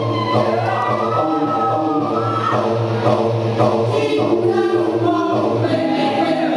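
Choir-like sampled voices played over a steady low drone, triggered live on a sampler in an experimental DJ routine, with some voice lines gliding in pitch in the first half.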